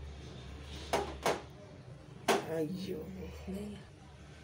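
A plastic spatula knocking a few times against a glass mixing bowl during the first half, followed by a faint, indistinct voice.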